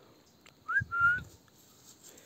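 Two short high whistles close together, the first rising and the second held a little longer.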